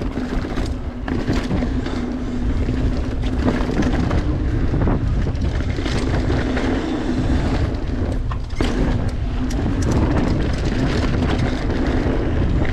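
Mountain bike rolling fast down a dirt trail: continuous tyre and wind noise on the microphone, with frequent rattles and clicks from the bike over bumps.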